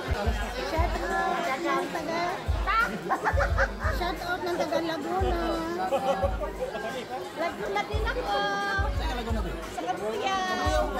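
Crowd chatter: many people talking over background music with a deep bass line.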